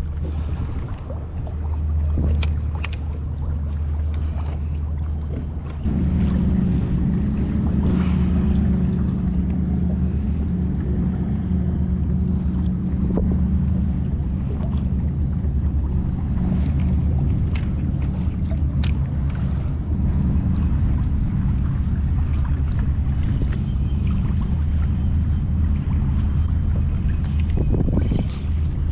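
Steady low hum and wind noise of a fishing kayak out on open water. The hum steps up about six seconds in and stays steady after that, with a few faint clicks.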